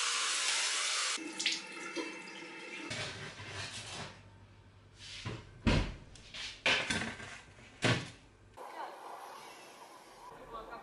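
Water running from a bathroom tap into a sink for about the first second, then quieter handling sounds. In the second half come a few sharp clanks as a metal baking tray is handled.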